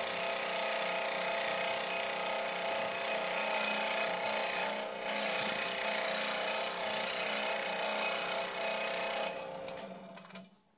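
Scroll saw running and cutting through plywood: a steady motor hum under the rasp of the reciprocating blade. Near the end the sound falls away as the saw stops.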